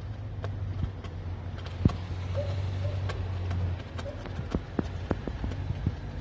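Handling noise on a handheld phone: irregular light clicks and knocks over a low steady hum that stops about four seconds in.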